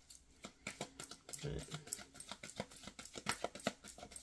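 A deck of tarot cards shuffled by hand, the cards tapping and slapping against each other in quick, irregular clicks, several a second.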